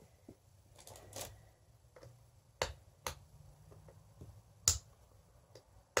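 Scattered sharp clicks and snaps from working open the sealed cap of a fragrance oil sample bottle. The three loudest come about two and a half, three and nearly five seconds in, with fainter handling noise between them.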